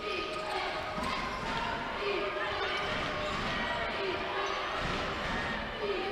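Basketball game ambience in an indoor arena: a basketball being dribbled on a hardwood court over a steady murmur of crowd voices.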